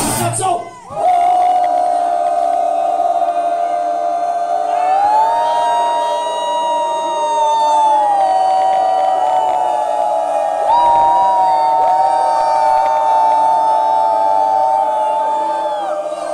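The band's loud rock music stops about half a second in. Then electric guitar feedback rings from the amplifier in held tones that step up and down in pitch, while the crowd cheers and shouts.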